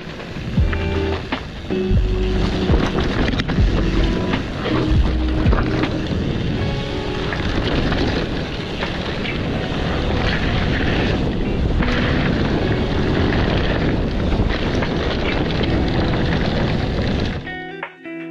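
Background music over a loud rushing of wind on the camera microphone and trail noise from a mountain bike riding fast downhill on dirt. It drops away suddenly near the end.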